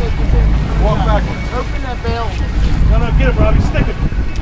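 A sportfishing boat's engine running under heavy wind buffeting on the microphone, with several voices calling out indistinctly over it.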